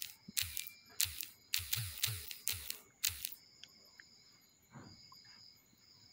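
Typing on a smartphone's on-screen keyboard: a quick run of about eight short, sharp clicks over the first three seconds, then only faint hiss.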